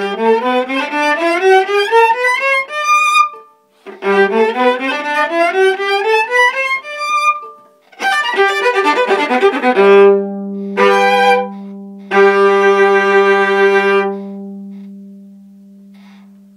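Unaccompanied solo viola playing two fast rising runs, a quick flurry of notes, then the closing chords over a low held note that rings on and fades away near the end.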